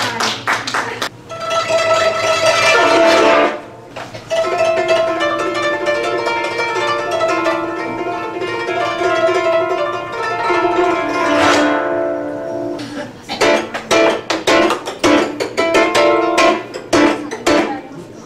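Amplified koto played through a pickup microphone system: plucked notes, then long held tones, a quick sweeping stroke across the strings, and a fast run of rapid plucked notes near the end.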